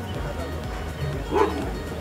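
A single short call, like a bark or yelp, about one and a half seconds in, over a steady low outdoor rumble.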